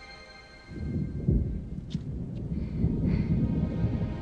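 A held musical chord, then, under a second in, a sudden deep rumble of thunder breaks in and keeps rolling.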